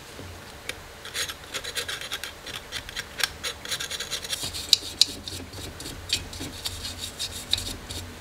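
A blade scraping dried brown residue off a thin metal camera cover plate: rapid, scratchy strokes that begin about a second in and run on with a few sharper clicks.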